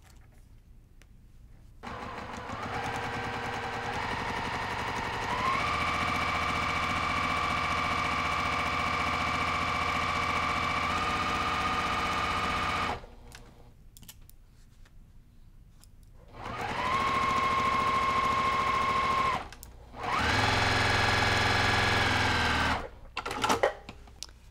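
Electric sewing machine stitching a seam through fabric and quilt batting. One long run of about eleven seconds that speeds up in steps, then after a pause two shorter runs of about three seconds each.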